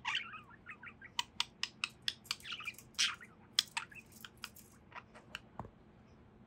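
Budgie chattering in a quick, irregular string of short chirps and clicks that thins out toward the end.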